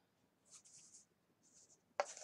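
Near silence, with a few faint, brief rustles.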